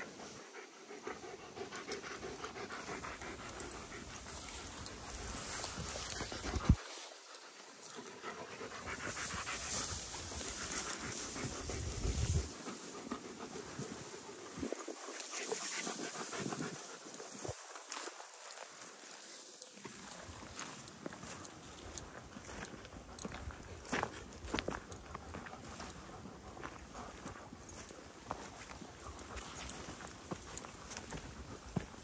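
A dog panting, with rustling through tall grass and footsteps.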